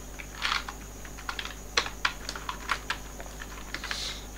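Computer keyboard being typed on: irregular key clicks, a few per second, over a faint steady hum.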